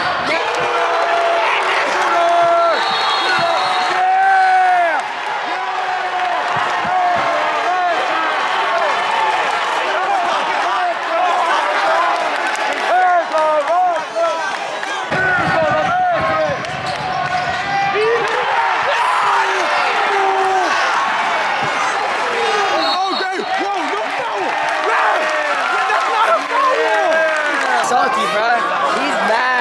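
Crowd of spectators at a basketball game shouting and cheering, many voices overlapping without a break.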